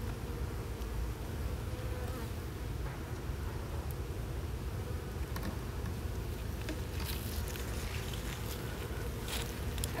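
Honeybees buzzing steadily as a hive is opened, with a few faint knocks as the wooden cover is pried loose with a hive tool.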